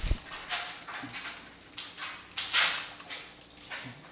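Norwegian Elkhound dogs making small whimpering sounds and short breathy noises, the loudest a breathy puff about two and a half seconds in.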